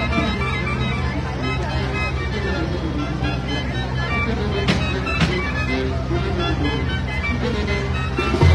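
Live band music playing a melody with steady held low notes over crowd chatter; two sharp cracks about halfway through.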